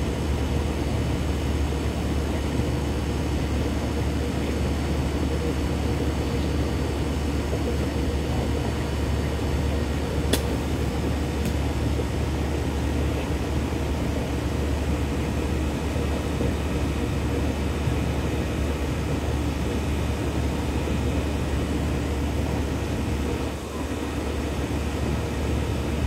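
Steady outdoor background drone with a low hum, even throughout, and one faint click about ten seconds in.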